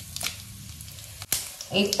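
Oil sizzling in a cast iron kadai as a tempering of seeds and broken dried red chillies fries, with scattered small crackles and one sharp click a little over a second in.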